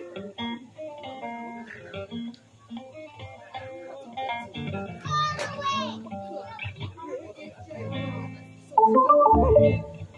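Guitar picking loose, scattered notes, with voices talking in the room. Near the end a much louder passage with a heavy bass comes in.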